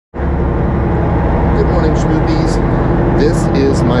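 Steady low drone and hum of a long-range fishing boat's engine machinery, heard inside a below-deck cabin.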